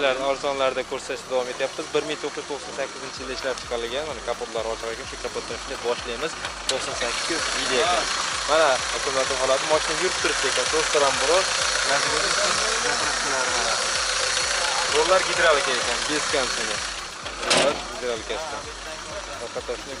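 Daewoo Nexia's E-TEC petrol engine comes on about three seconds in and idles with the hood open, louder in the middle stretch. A single sharp thump comes near the end.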